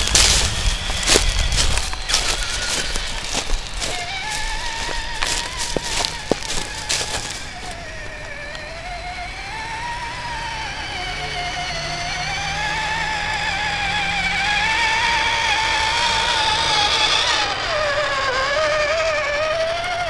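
Whine of an electric RC pickup truck's motor and gears as it tows a loaded steel trailer, the pitch rising and falling with the throttle. Over the first several seconds there is crackling from the tyres rolling over dry leaves and dirt.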